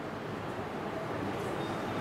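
Steady rumbling background noise with a low hum underneath.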